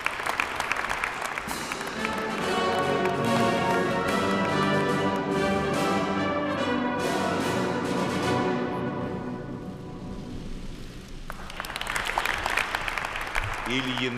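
Applause, then a brass-led orchestral fanfare of sustained chords that takes over for several seconds and fades away, with applause rising again near the end.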